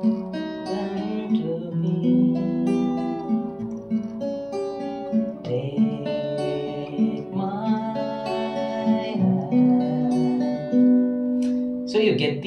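Acoustic guitar fingerpicked in an arpeggio pattern: a bass string plucked for each chord, then the top three strings in a 3-2-1-2-3 pattern, the notes ringing over one another as the chords change.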